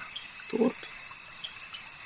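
Night-time ambience of insects chirring steadily, with a short low sound about half a second in.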